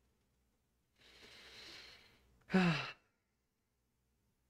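A man sighing: a soft, breathy exhale lasting about a second, followed by a short, louder voiced sigh that falls in pitch.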